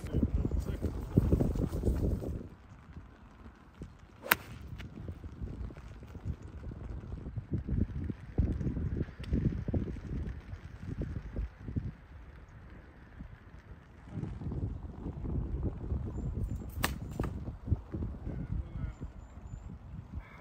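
Wind buffeting the microphone in uneven gusts, with two sharp clicks, one about four seconds in and one near the end.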